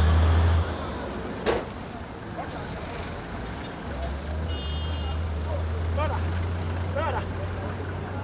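Low engine rumble of heavy road traffic, a truck passing. It drops away about half a second in and builds again from about four seconds. A sharp knock comes a second and a half in, a brief high beep just before the middle, and short voice calls in the second half.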